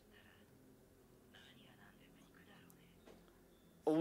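Faint anime dialogue playing quietly in a few short phrases, just above near silence. A man's voice starts loudly right at the end.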